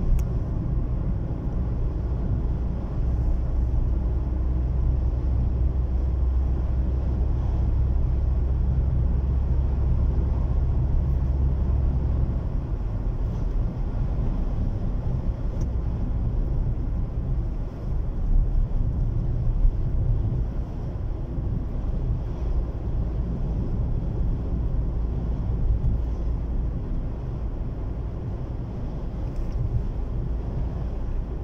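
Road and engine noise inside a moving car's cabin: a steady deep rumble. The lowest hum eases about twelve seconds in, and a few louder bumps come a little later.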